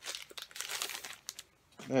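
Packaging around a sketchbook crinkling and rustling in quick, crackly handling noises for about a second and a half as it is opened, then stopping.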